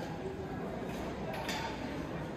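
Pedestrian street ambience at night: indistinct voices of passers-by over a steady background hum, with a sharp click about one and a half seconds in.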